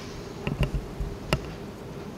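A desk microphone that has just gone live, picking up a steady electrical buzz and a few sharp clicks and knocks from handling. The loudest knock comes about a second and a third in.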